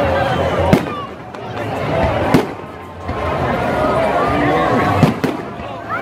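Aerial firework shells bursting overhead: three sharp bangs, about a second in, past two seconds and just after five seconds, over a steady bed of voices.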